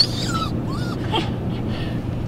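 Small dog whining in a few short, high gliding whimpers in the first second, stirred up by the question of going trapping, over a steady low hum inside the vehicle.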